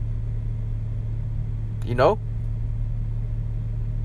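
A steady low rumble or hum throughout, with a man briefly saying "you know?" about two seconds in.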